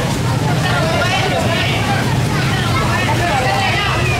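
Crowd of parade carriers and onlookers talking and calling out at once, several voices overlapping, over a steady low rumble.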